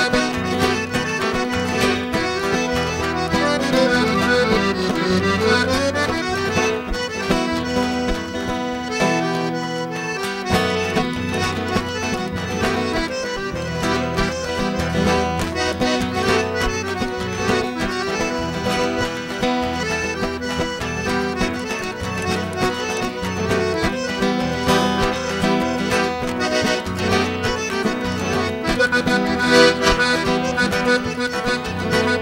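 Piano accordion playing an instrumental tune, with two acoustic guitars strumming the accompaniment. A few seconds in, the accordion plays quick runs up and down.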